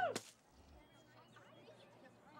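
Faint outdoor background with a few soft bird chirps, right after a voice cuts off at the very start.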